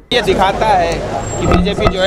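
Several people talking at once over the low, steady running of vehicle engines in street traffic.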